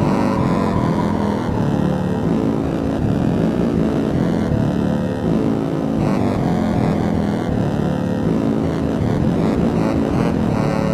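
Hardware synthesizer music: dense, low-pitched sustained synth chords, the notes changing about every second and a half.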